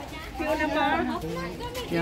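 Voices of people talking in a crowd, with a child's high-pitched voice about half a second in and a lower adult voice after it.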